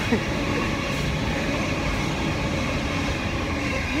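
A train running, heard as a steady, even noise with no break.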